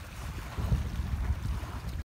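Wind buffeting the microphone: an irregular low rumble that grows much stronger about half a second in.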